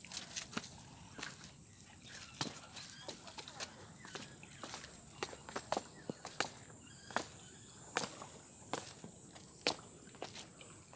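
Footsteps of people walking: irregular sharp steps and scuffs, one or two a second, over a steady high-pitched whine in the background.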